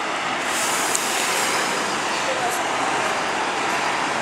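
Steady street noise from buses and road traffic: an even wash of sound with no distinct events.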